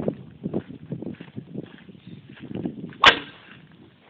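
A bullwhip cracking once, sharply, about three seconds in, after a stretch of faint scuffing.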